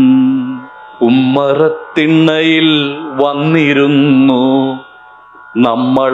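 A man's voice singing lines of a Malayalam poem to a Carnatic-style melody, holding long wavering notes, in phrases broken by two short pauses, the longer one near the end.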